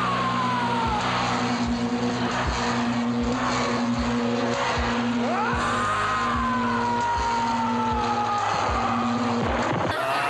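A loud, steady engine-like sound, like a car revving, over a low thump roughly every 0.7 seconds, with two whines that rise and then slowly fall, one at the start and one about halfway through.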